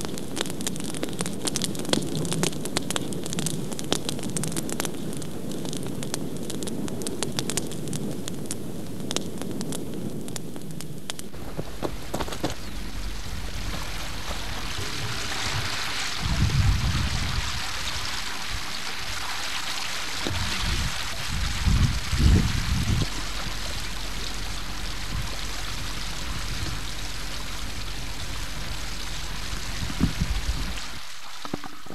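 A large open fire crackling over a low rumble for about the first eleven seconds. It then gives way abruptly to the steady rushing of a river, with a few low rumbling thumps near the middle.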